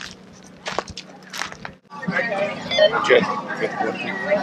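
Footsteps crunching on gravelly ground for the first couple of seconds. After a sudden break, several people talk in the background over a low steady hum.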